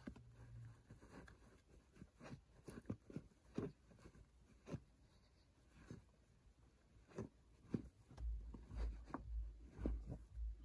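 Faint rustling and soft irregular taps of stacked fabric fitted caps being handled, fingers lifting and flicking through their brims. A run of low muffled bumps comes near the end.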